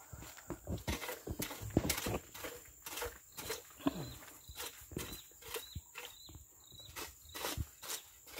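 Loose oil palm fruitlets being gathered by hand and tossed into a woven basket: irregular quick clicks and light knocks, several a second.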